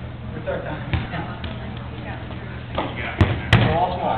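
Rubber dodgeball impacts in a gym: a light knock about a second in, then two sharp thumps about a third of a second apart near the end, over faint voices.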